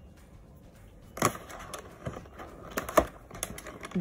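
Product packaging being handled and opened by hand: a few sharp clicks and crackles, the first about a second in and a cluster near three seconds.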